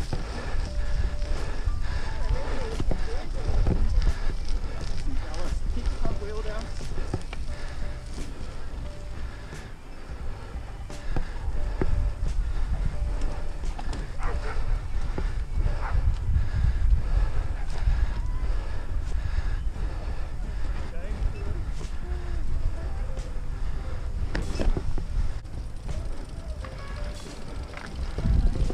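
Wind buffeting a helmet-mounted camera microphone, with a steady low rumble, as a mountain bike is ridden fast over bumpy grass. The bike rattles and clicks over the ground.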